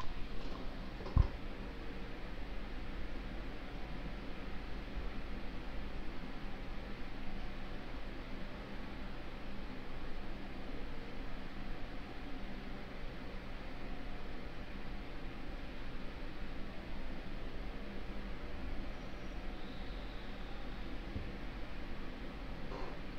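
Steady low background hiss with a faint hum, the room tone of a desk microphone, broken by one sharp click about a second in.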